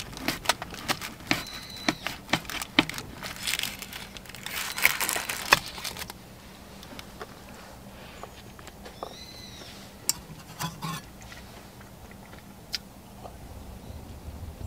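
A knife cutting through a crisp, flaky pastry crust on parchment paper: a run of sharp crunches and crackles, densest about four to six seconds in, then stopping, with only a few faint clicks afterwards.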